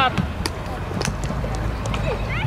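Football kicked on a grass pitch: about three sharp thuds, roughly half a second, one second and just under two seconds in, with a child's shout cutting off at the very start.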